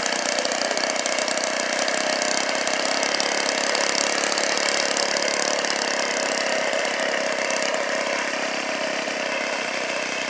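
OS 120 four-stroke model aircraft engine on an RC Tiger Moth biplane running steadily as the plane taxis on grass. The sound fades slightly near the end as the plane moves away.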